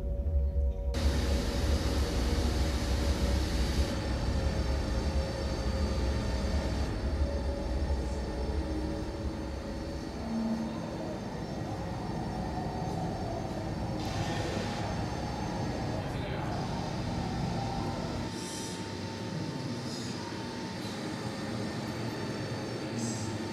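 A steady, noisy rumble, heavy in the low end for roughly the first ten seconds, then thinner, with a few faint held tones above it.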